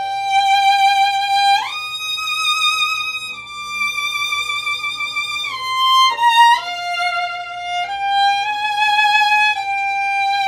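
Solo violin playing a slow phrase of long held notes joined by slides, a slide up about a second and a half in and slides down around the middle. Each note starts plain and then eases into vibrato, the 'sad' way of using vibrato, where the vibrato is not applied the moment the finger lands.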